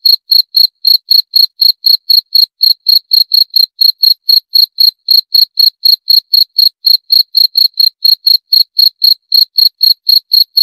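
Cricket chirping in a fast, even run of short high-pitched chirps, about five a second, with no break.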